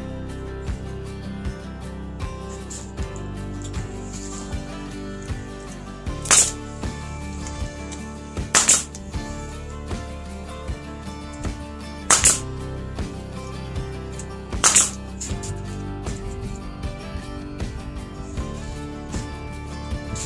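Pneumatic finish nailer firing a handful of sharp shots a few seconds apart, driving nails through a wooden trim block into a post. Background music with a steady beat plays throughout.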